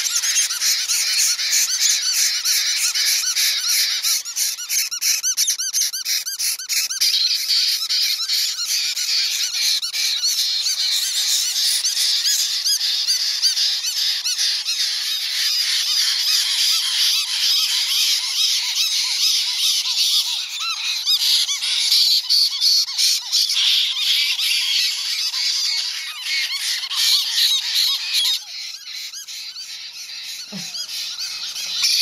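Several unfeathered baby caique parrot chicks screaming nonstop: a dense racket of rapid, harsh, high-pitched begging calls that eases a little near the end. It is the desperate food-begging screaming typical of baby caiques, even when their crops are full.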